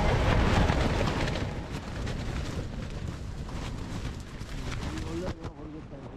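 Heavy wind buffeting a microphone in a gale, a dense low rumble that is loudest at first and eases off. A voice comes in faintly near the end.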